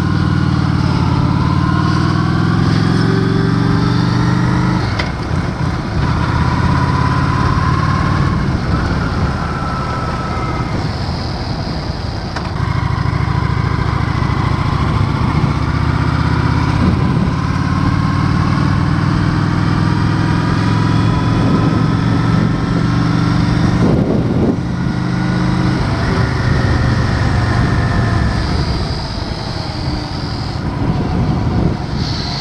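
Honda Shadow 750's V-twin engine running while riding, its pitch climbing several times and dropping back about five, twelve and twenty-four seconds in.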